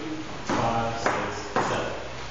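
Three dance steps in dress shoes on a wooden floor, each landing as a sharp tap about half a second apart, with a man counting the beats aloud over them ('five, six, seven').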